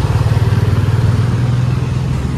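Motorcycle engine running close by, a steady low drone.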